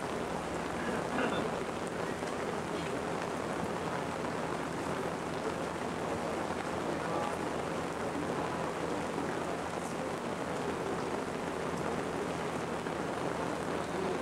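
Steady rushing noise with a low electrical hum underneath, no distinct events and no speech.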